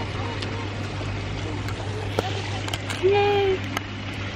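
A steady low hum under faint murmuring voices. About three seconds in, a person makes a short, level hum.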